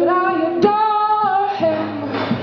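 A woman singing held notes over guitar. About halfway through she steps up to a higher note and holds it for about a second before moving on.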